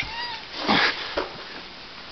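A domestic cat giving a short, high-pitched meow, followed by a rougher, shorter sound just under a second later.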